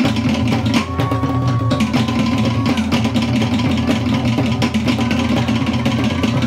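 Fast Tahitian 'ote'a percussion music: rapid, dense wooden drum strikes over a deep, steady drum part.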